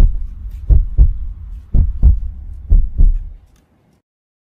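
Heartbeat sound effect: four low double thumps, one about every second, fading out shortly before the end.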